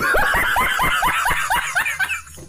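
A man laughing hard in a quick run of 'ha-ha-ha' pulses, about five a second. It cuts in suddenly and stops near the end.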